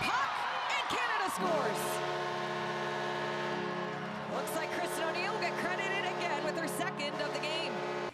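Arena goal horn sounding one long steady blast, starting about a second and a half in, over a cheering, shouting crowd: the signal that a goal has been scored.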